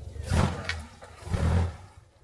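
A Seven-style kit car's engine running at idle and revved twice, each rev lasting about half a second, the two about a second apart.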